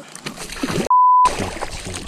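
A censor bleep: one steady, pure beep about a third of a second long near the middle, with all other sound cut out beneath it. Around it, water sloshing as a hooked bowfin is handled at the side of a kayak.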